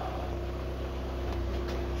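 Steady low mechanical hum with a faint constant tone above it.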